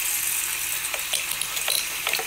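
Bathroom sink tap running, a steady hiss of water falling into the basin, with a few faint ticks about halfway through.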